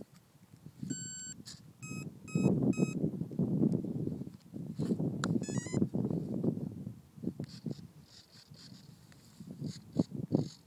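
Electronic beeps from the ParkZone Mustang RC plane's speed controller as its flight battery is connected before flight: one long beep, then three short beeps, then a quick run of rising chirps. Loud rustling and handling noise runs under the middle of it.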